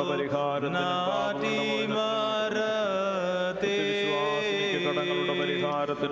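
Voices singing a slow liturgical chant in the church service, with long held notes that shift pitch every second or two.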